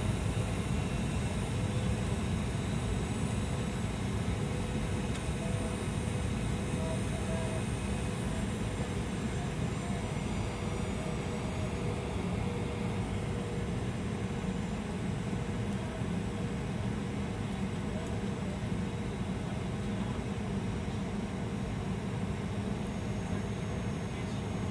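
Steady cabin noise of a jet airliner in flight: engine and airflow noise heard from inside, a low, even rumble with faint steady whining tones above it.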